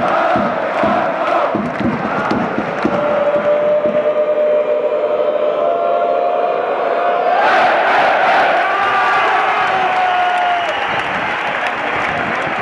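A football stadium crowd of supporters chanting, first in a rhythmic pattern, then singing one long held note together that swells about seven and a half seconds in and dies away shortly before the end.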